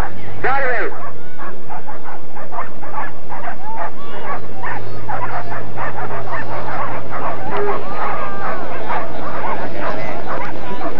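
Many dogs barking and yelping excitedly in quick, overlapping calls, with human voices shouting among them and a low steady hum underneath.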